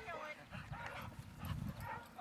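Faint dog whimpering with low grumbles in short, irregular bouts.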